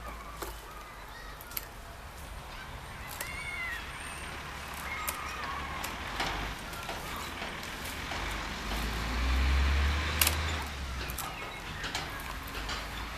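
Hand pruning shears snipping apricot twigs, a few sharp clicks spread apart, while wind rumbles on the microphone, swelling loudest about nine to ten and a half seconds in.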